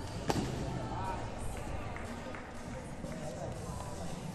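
A single thump of a gymnast landing on a competition trampoline bed about a third of a second in, followed by the hall's steady background with faint distant voices.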